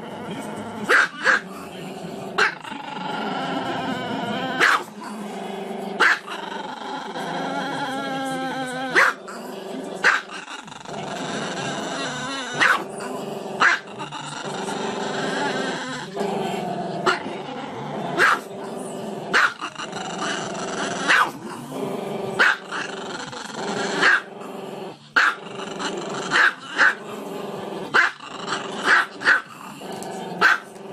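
Small Chihuahua-type dog howling in long, wavering, growly notes, broken every second or two by short, sharp barks.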